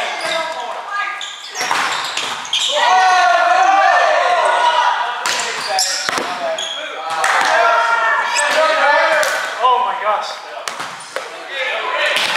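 Indoor volleyball play in a large gym: sharp slaps of hands on the ball and the ball striking the hardwood floor, ringing in the hall, among players' loud calls and shouts.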